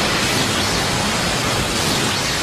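Anime sound effect of a Rasengan striking: a loud, steady rushing noise like strong wind.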